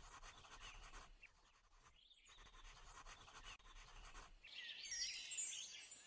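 Pencil scratching on paper in two strokes, the first about a second long and the second about two and a half seconds. Near the end come high, quick chirping tones.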